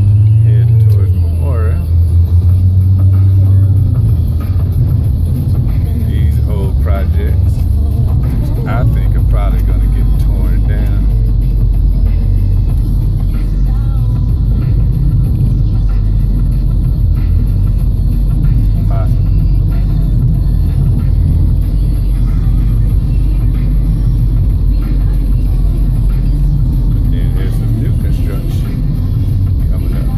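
Car driving, heard from inside the cabin: a steady low rumble of road and engine noise. A voice and music sound over it, mostly in the first ten seconds.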